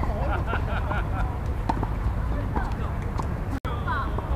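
Indistinct voices of players talking on an outdoor tennis court, with a few sharp knocks of tennis balls being hit or bounced, over a steady low rumble. The sound cuts out for an instant near the end.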